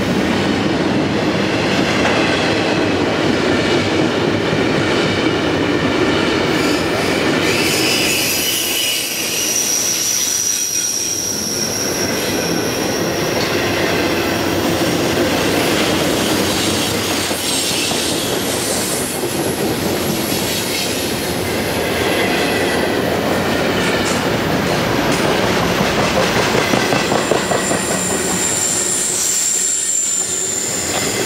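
Double-stack container train's well cars rolling past: a loud, steady rumble and clatter of steel wheels on rail. Thin, high wheel squeals ride on top about ten seconds in and again near the end.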